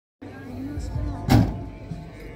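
Voices and a steady low hum, with one loud thump just over a second in.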